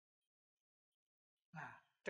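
Near silence, then a short, faint breath or voice sound from the speaker about one and a half seconds in.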